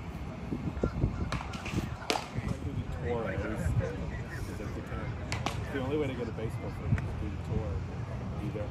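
Baseballs caught in leather gloves during a game of catch: a few sharp single smacks a couple of seconds apart, with men's voices talking in the background.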